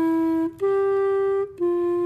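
Clarinet played in slow held notes: a note that breaks off about half a second in, a slightly higher note for about a second, then the lower note again.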